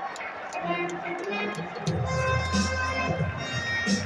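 Ballpark PA music playing over the crowd, with a heavy bass line coming in about two seconds in.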